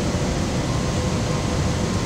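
Steady industrial background noise, a constant rush with a faint steady hum, as of mill machinery running.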